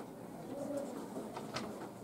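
Low murmur of quiet conversation and whispering in a small room, with a few soft hissing consonants.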